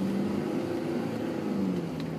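Car engine and road noise while driving: a steady hum whose pitch dips slightly near the end.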